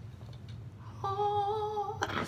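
A person's voice humming or singing one steady high note for about a second, starting about a second in, over a low steady background hum.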